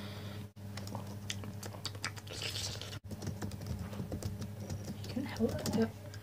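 Typing on a laptop keyboard: a run of quick, irregular key clicks over a steady low electrical hum, broken twice by a brief gap.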